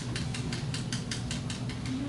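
A rapid, regular run of light mechanical clicks, about eight a second.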